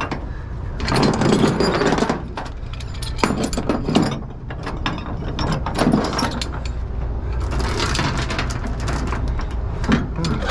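Steel tie-down chain rattling and clanking against the flatbed deck and binder as it is pulled and hooked around the load, in runs of quick metallic clicks with louder bursts about a second in and again near the end.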